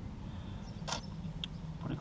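A steady low machine hum, with one sharp click about a second in.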